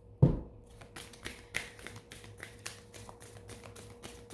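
A single low thump, then a quick, irregular run of light taps, several a second.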